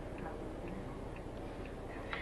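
Faint, regular ticking, about two ticks a second, over a steady low room hum.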